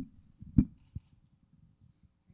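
Handheld microphone being handled as it is raised: a short knock about half a second in and a smaller click a moment later, over a low steady room hum.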